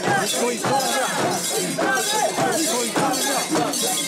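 Mikoshi (portable Shinto shrine) being carried: many bearers shouting and chanting together while the shrine's metal fittings and ornaments jangle and clink as it is jostled.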